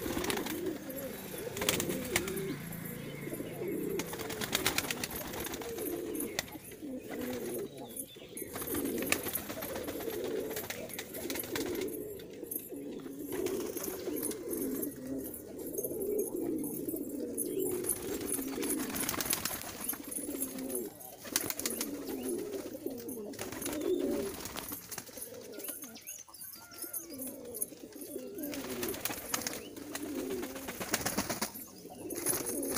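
A flock of domestic fancy pigeons cooing continuously, many low coos overlapping without a break.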